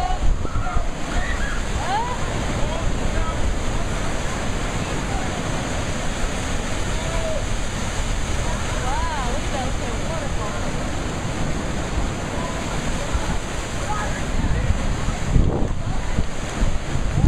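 Ocean surf breaking over a rock ledge and pouring into a rock pool: a steady, unbroken rush of crashing waves and cascading white water.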